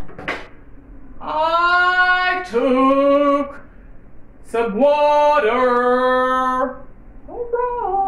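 A woman singing unaccompanied in long, drawn-out notes: three sung phrases with short pauses between, the pitch stepping between held notes within each phrase.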